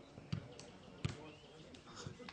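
Two dull thumps of a football being struck on the pitch, about two-thirds of a second apart.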